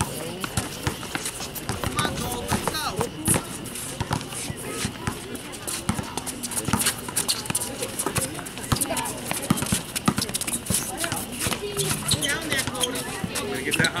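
Basketball being dribbled on an outdoor hard court amid players' running footsteps, a continual scatter of sharp knocks, with spectators' voices chattering and calling out.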